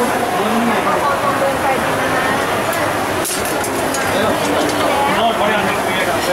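Busy restaurant kitchen ambience: indistinct voices over a steady rush of background noise, with a sharp metal clink a little past the middle followed by a few lighter ticks.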